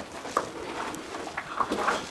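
Faint footsteps and scuffs on a dirt tunnel floor, a few small ticks standing out over a low, even hiss.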